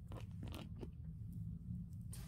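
Hands handling and setting down a Louis Vuitton monogram canvas handbag: a few short crinkly rustles in the first second, then quiet apart from a steady low hum.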